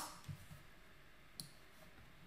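Near silence with a single faint computer mouse click about one and a half seconds in, as the view is switched from the slides to a spreadsheet.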